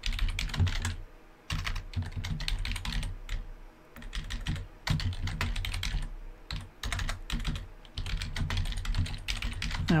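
Typing on a computer keyboard: quick runs of keystrokes, broken by a few short pauses.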